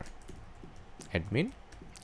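Computer keyboard typing: a run of light keystrokes as a file name is typed. A short spoken sound comes about a second in.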